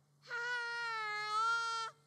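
A young child's voice calling out one long, drawn-out high note, held nearly level for about a second and a half and starting a moment in.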